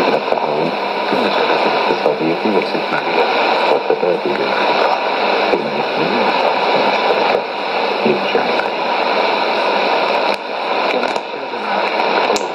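Arabic-language news speech from Radio Sultanate of Oman received on shortwave AM at 15140 kHz through a Sony ICF-2001D receiver, with steady hiss and static under the voice. The signal dips briefly in loudness near the end.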